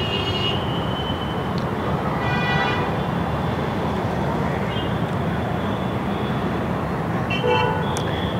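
Steady rumble of outdoor traffic, with a brief horn toot about two seconds in and another short pitched sound near the end.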